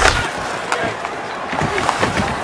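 Ice hockey game sound: skates carving the ice and a few sharp stick-on-puck clacks over a steady arena background.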